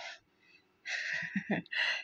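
A woman breathing audibly between phrases: a quick intake, then two longer breathy exhales with a brief low murmur between them.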